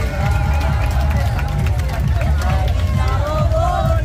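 Several women's voices singing a folk tune together, over a loud low rumble of background music and crowd noise.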